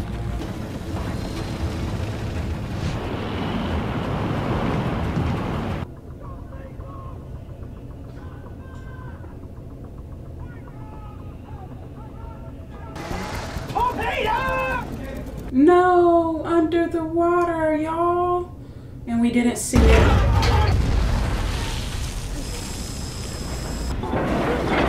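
War-film soundtrack: a loud, deep rumble with steady low tones for the first six seconds, then a quieter stretch. Voices follow about fourteen to nineteen seconds in, and a sudden loud, deep noisy rumble starts about twenty seconds in.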